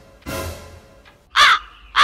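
A crow cawing twice as a comic sound effect, starting about a second and a half in, over a light background music beat.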